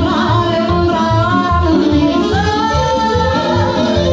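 Live Romanian folk party music: a woman singing into a microphone over an amplified band with accordion and a steady bass beat.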